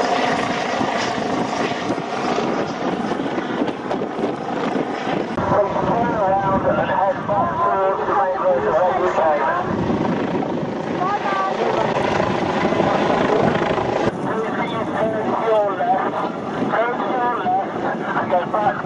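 Helicopter rotor and engine noise, steady and loud, as the helicopter flies low overhead, with voices audible under it.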